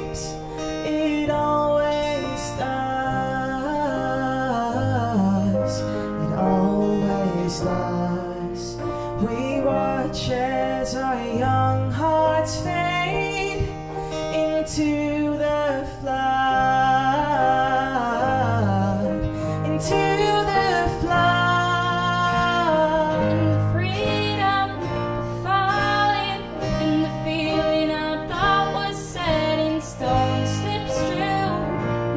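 Live acoustic pop song: strummed acoustic guitar and electric piano, with female voices singing the melody.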